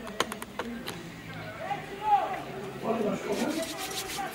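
Men's voices calling and shouting across an open football pitch, the loudest shout about two seconds in. A few sharp clicks come in the first second.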